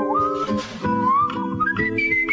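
A man whistling a jazz melody into a microphone, one clear line sliding between notes and climbing higher near the end. Under it a jazz guitar plays plucked chords.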